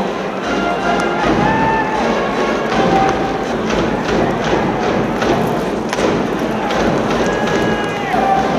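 Stadium cheering band in the stands: brass playing held, sustained notes over repeated drum thumps.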